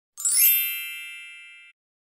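A single bright chime sound effect, like a struck bell with many high, shimmering overtones, ringing out and fading for about a second and a half before it cuts off suddenly.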